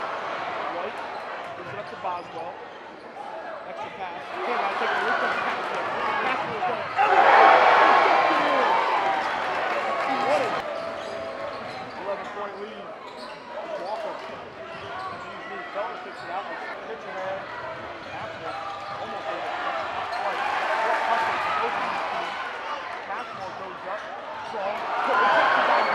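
Basketball game sound in a gym: the ball bouncing on the hardwood court amid a steady hubbub of spectator voices, which swell loudly about seven seconds in and again near the end.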